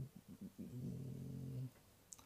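A man's low closed-mouth hum, a hesitant "mmm" about a second long, preceded by a few faint mouth clicks.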